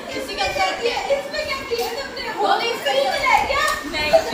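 Several women's voices talking over one another in lively chatter.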